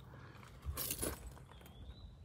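Quiet background with a brief rustle a little under a second in and a faint, short, high chirp near the end.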